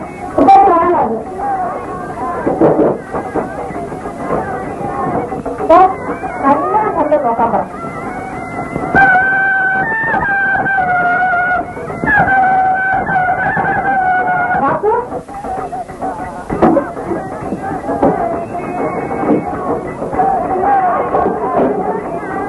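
Old film soundtrack of a voice with music, with a few long, steady, slightly wavering melodic notes held in the middle.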